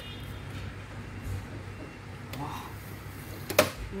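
Steady hiss of heavy rain, heard from indoors through an open window, with one sharp click about three and a half seconds in.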